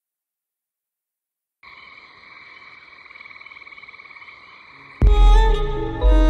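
Silence, then about a second and a half in a steady, fast-pulsing night chorus of frogs croaking starts. Near the end a loud orchestral score with strings and deep bass comes in suddenly.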